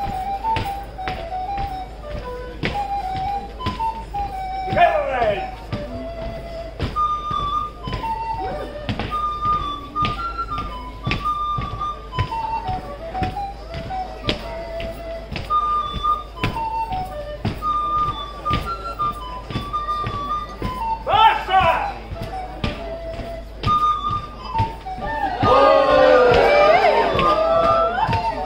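Live folk dance music: a single melody instrument playing a tune in short notes over a steady beat of sharp knocks on a wooden floor. There are two short voice shouts, and a louder burst of crowd voices comes at the very end.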